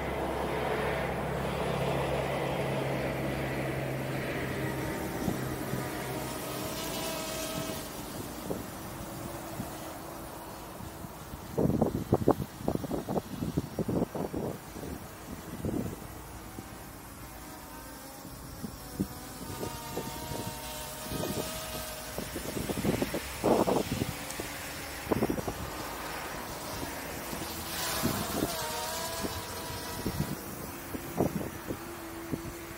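Dragonfly KK13 quadcopter's brushless motors and propellers whining from a distance, the pitch wavering as it manoeuvres. Gusts of wind buffet the microphone in bursts about halfway through and again near the end.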